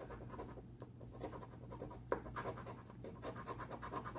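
A coin-like token scraping the coating off a 200X scratch-off lottery ticket in quick, faint, repeated strokes.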